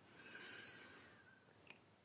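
Near silence in a pause between sentences, with a faint high-pitched whistle that rises then falls during the first second and a faint click near the end.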